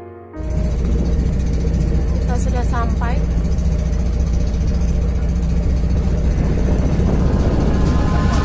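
Small boat's engine running steadily, heard from on board with wind and water noise. A few short high gliding calls come about two and a half seconds in.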